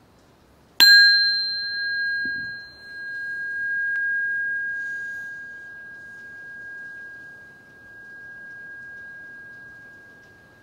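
A metal singing bowl struck once about a second in, ringing a clear high tone with a fainter overtone above it. The ring swells and fades in slow waves as it decays, still sounding at the end.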